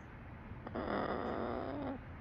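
A macaw giving one short, rough, noisy call about a second long, starting about two-thirds of a second in.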